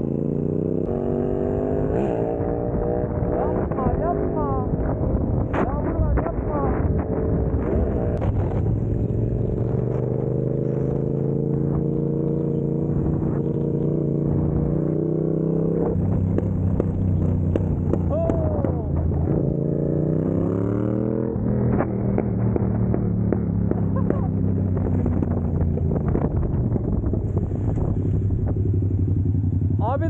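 Sport motorcycle engine heard from the rider's seat while riding, its note climbing steadily as it accelerates, with gear changes about sixteen and twenty-one seconds in.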